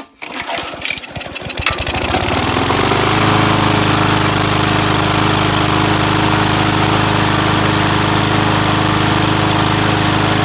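Victa four-stroke lawn mower engine starting up: it fires unevenly for a moment, then picks up speed with a rising note over about three seconds and settles into a steady, even run. It is being run to warm up before an oil change.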